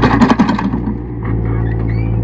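A shovelful of soil and rocks thrown onto a dirt pile, a short clattering rush in the first second. A steady low mechanical hum runs underneath.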